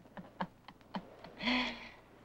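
A woman's soft laughter: a run of short, breathy chuckles, ending in one longer voiced breath about a second and a half in.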